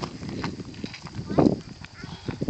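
Footsteps crunching on a gravel road: uneven, irregular steps, the loudest right at the start and about a second and a half in.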